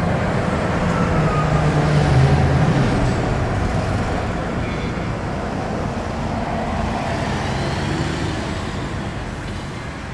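Car driving along a city street, heard from inside the cabin: steady engine and tyre rumble, a little louder around two to three seconds in, then easing off.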